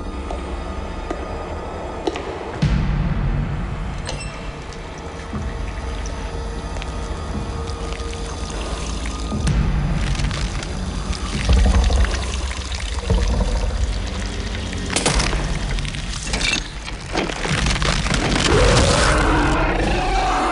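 Film trailer soundtrack: tense music with a sound effect of running, pouring water and several heavy low thuds. It grows louder and busier in the last few seconds.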